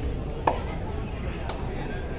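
Two sharp slaps, about a second apart with the first the louder, from the players on a kabaddi court, over a steady murmur of crowd in the hall.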